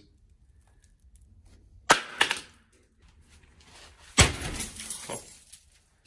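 Thick laminated bulletproof glass in a door struck hard twice, about two seconds apart. Each blow gives a sharp crack followed by crunching and crackling of the glass, and the second blow's crackle runs longer as the pane is holed.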